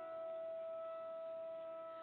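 Church accompaniment instrument holding one long, steady note, the closing note of the introduction to the responsorial psalm before the refrain is sung. It fades near the end.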